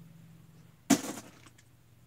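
A single sharp clack about a second in, a hard plastic or metal object being set down on a hard surface, with a short ring-out after it.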